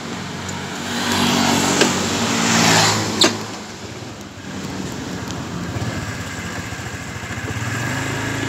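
A motorcycle passes close by, its engine and tyre noise swelling and then fading over about three seconds, with a sharp knock near the middle. Quieter engine noise of other traffic follows.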